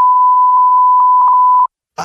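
Loud, steady censor bleep, a single pure tone around 1 kHz, masking a spoken line. It cuts off about one and a half seconds in.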